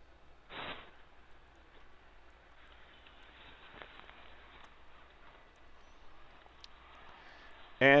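Faint workshop room tone with one short hiss about half a second in.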